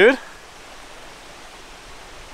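A man's voice finishing a word, then a steady faint hiss of outdoor background noise with no shots or impacts.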